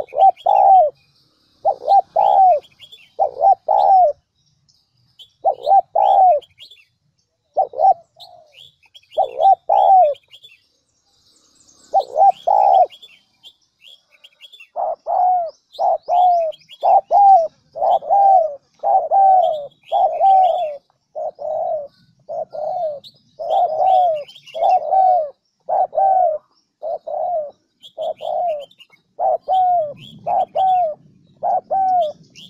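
Spotted dove cooing: repeated short coo notes, in pairs and small groups with pauses at first, then a steady run of rapid coos from about halfway on. Small birds chirp faintly in the background.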